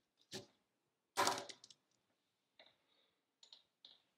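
Pen and paper handled on a table: a few scattered light clicks and taps, with one louder, sharp crackling knock a little over a second in.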